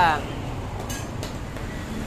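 Hands pressing and patting a lump of bread dough on a plastic tray, with two soft pats about a second in, over a steady low background rumble.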